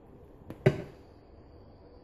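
A light click, then a single sharp knock of something hard being set down or struck in the kitchen about two-thirds of a second in, followed by a faint high ring that fades over the next two seconds.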